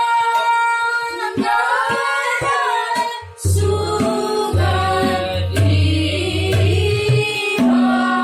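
A woman's voice leads group singing of a dhrupad bandish in raag Malkauns, with harmonium and tabla accompaniment. Low tabla strokes keep the rhythm and drop out briefly twice.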